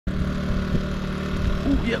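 A small engine running steadily at an even speed, a constant low hum.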